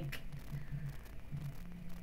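Quiet room tone with a faint, wavering low hum that comes and goes.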